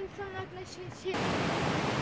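Steady roar of falling water from a nearby waterfall, cutting in abruptly about a second in after quieter lakeside ambience.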